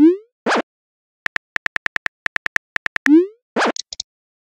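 Texting-app sound effects: a rising swoosh and a short whoosh as a message is sent, at the start and again a little past three seconds in. Between them, a run of rapid phone-keyboard clicks, several a second.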